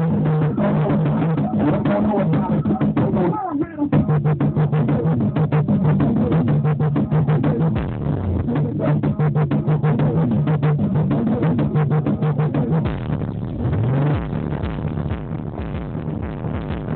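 Electronic music with a heavy, repeating bass line played loud through a 12-inch Eclipse competition-series car subwoofer, driven by two amplifier channels bridged into the one sub. The music drops out for a moment a little over three seconds in.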